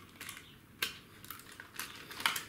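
Light plastic clicks and rattles from a display case and packaging being handled and pried apart, with one sharper click a little under a second in and a few more near the end.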